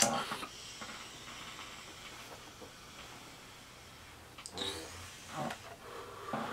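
Someone taking a long draw on a vape pen: a faint, steady hiss of the inhale, then a few short breathy sounds after about four seconds as the vapour is let out.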